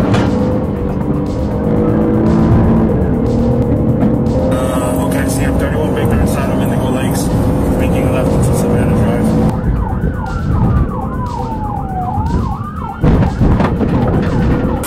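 Police patrol car driving fast in a pursuit: steady engine and road noise, with the siren switching on near the end, wailing in slow and quick rising and falling sweeps.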